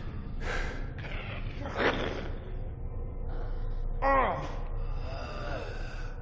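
A man gasping in pain: two sharp breaths, then a groan falling in pitch about four seconds in and a weaker one after it, over a steady low rumble.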